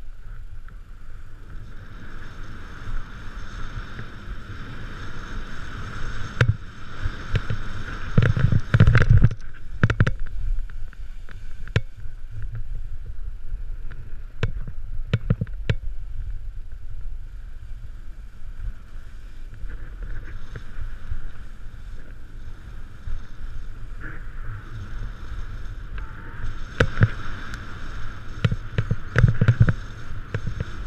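Snowboard sliding and carving down a snow slope: a steady hiss and scrape of the board on the snow, with low wind rumble on the microphone. Sharp knocks come in clusters, around nine seconds in, mid-way, and again near the end.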